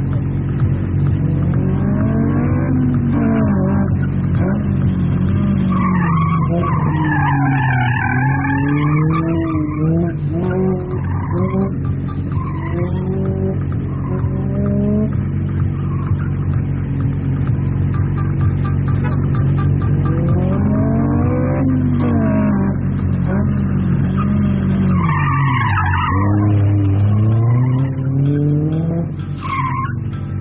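Car engine revving up and down repeatedly as the car is driven hard through a cone slalom, with tyres squealing in the tight turns, most clearly twice: about six seconds in and again near the end.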